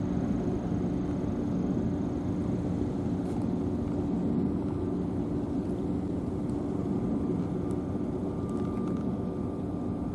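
Steady low mechanical drone of harbourside machinery and engines, with a faint thin whine coming in about seven seconds in.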